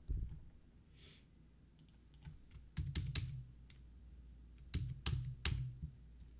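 Keystrokes on a computer keyboard, in three short bursts of clicks spread across a few seconds, as a stock ticker is typed in.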